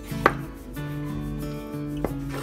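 A kitchen knife knocks once, sharply, against a plastic cutting board about a quarter-second in while cutting through a raw chicken at the joint, with background music playing throughout.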